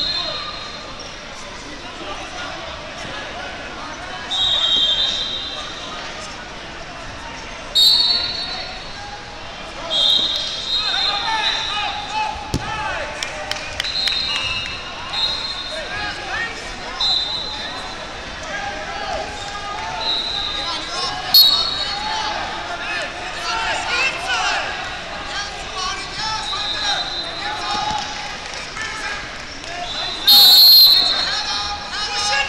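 Short, shrill blasts of referees' whistles from the surrounding wrestling mats, about eight of them spread through the stretch. Under them runs a steady din of spectators' chatter and shouted calls.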